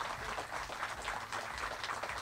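Audience applauding: a dense, irregular patter of many hand claps.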